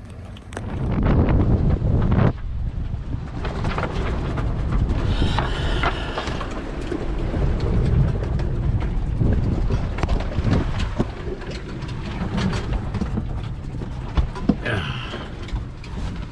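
Gale wind and heavy seas around a small sailboat riding to a sea anchor: a loud, steady rushing noise with frequent knocks and thumps of the boat and its gear.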